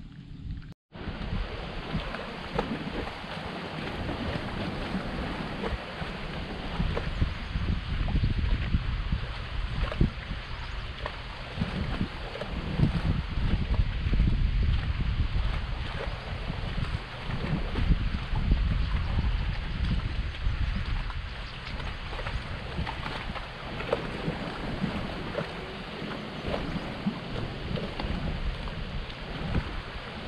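Wind buffeting the microphone: a continuous rushing rumble that swells and eases, starting after a brief dropout about a second in.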